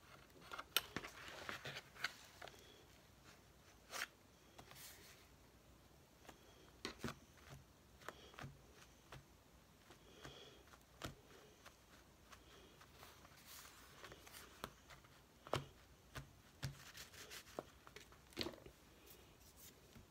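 Faint paper and card handling: journal pages and a chipboard frame rubbed and shifted, with scattered light taps and clicks.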